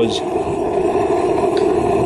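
Homemade propane foundry firing: a propane weed burner with forced air from two blower fans runs with a loud, steady rush of flame and air.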